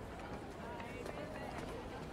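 Quiet outdoor background ambience with a faint murmur of distant voices from people around, steady and low, with no sharp sounds.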